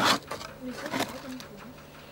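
Mostly speech: a short spoken "oui" after a brief noisy burst at the very start, over a faint steady low hum.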